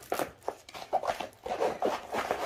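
A rolled diamond-painting canvas being unrolled and rolled back against its curl, its sheet rustling and rubbing in a run of short, irregular scrapes.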